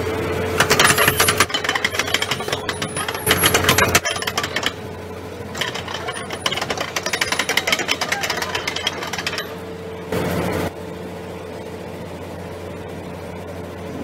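Heavy piling-site machinery: bursts of rapid metallic rattling and clatter, three of them in the first nine seconds, over a steady engine hum, with a short louder burst near the end.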